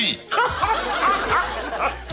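Sitcom studio audience laughing, many voices overlapping, with a short lull just after the start before the laughter picks up again.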